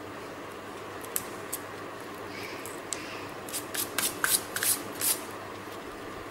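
Light, crisp clicks and rustles of thin dry broom-stick pieces being handled and pressed onto paper: a few scattered ticks, then a quick cluster of them in the second half.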